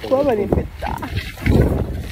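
A woman's wordless vocal sounds, pitch sliding up and down, followed about one and a half seconds in by a low muffled rumble of the phone rubbing against her puffy jacket.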